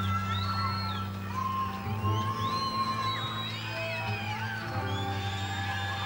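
Live band and orchestra holding a soft instrumental passage, sustained low chords under a high melodic line, with audience screams and whoops rising and falling over it.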